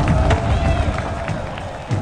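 A loud low rumble with scattered knocks and faint voices, fading toward the end, with music under it.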